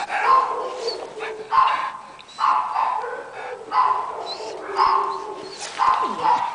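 A dog giving a run of about six short, whining bark-like calls, roughly one a second.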